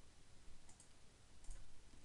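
Faint computer mouse clicks, a few short clicks in two small groups, as cells are selected in a spreadsheet.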